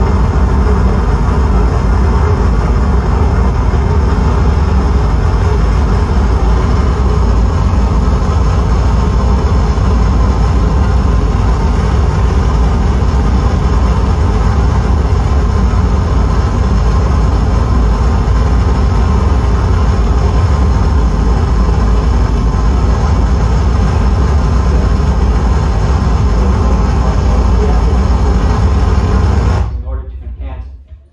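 Harsh noise electronics from a table of patched effects pedals and a small mixer: a loud, dense, unbroken wall of distorted noise, heaviest in the bass. It cuts off suddenly right at the end.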